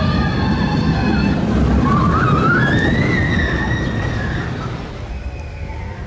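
Roller coaster train running along steel track: a loud, low rumble that swells and then eases after about four seconds as the train passes, with steady high whines and a wavering, rising whine about two seconds in.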